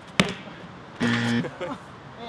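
A football struck hard with the foot: one sharp kick shortly after the start. About a second later comes a short, loud, steady-pitched sound.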